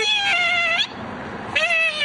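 Two drawn-out, high-pitched, meow-like vocal cries, one falling slightly in pitch and the next starting about a second and a half in.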